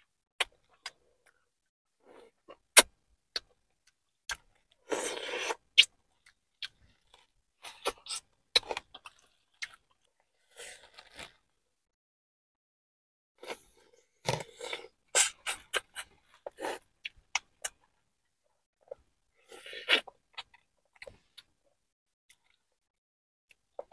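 Close-miked eating of seafood-boil crab legs: chewing with sharp mouth clicks and smacks at irregular intervals. There are a few louder crackly bursts, about five seconds in, in a cluster in the middle, and again near the end.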